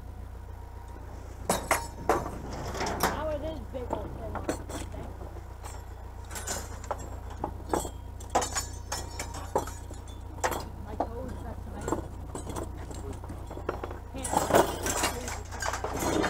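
Metal pegboard hooks clinking against each other and on wooden boards as they are picked up and sorted by hand, in scattered light clinks.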